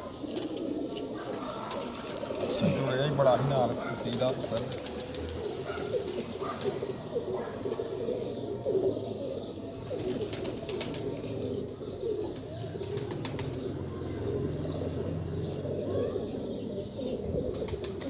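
Domestic pigeons cooing, with low voices murmuring alongside.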